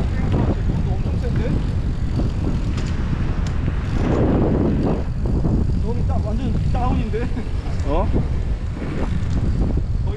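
Wind rushing over the camera microphone of a moving bicycle, a steady low rumble, with brief snatches of voices.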